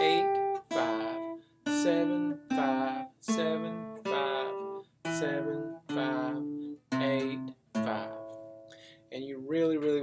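Steel-string acoustic guitar playing a pentatonic scale one picked note at a time, descending back down the scale from the 8th fret, about one note a second, each note ringing until the next.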